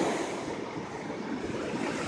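Ocean surf on a sandy beach: a steady wash of noise that eases a little after the start.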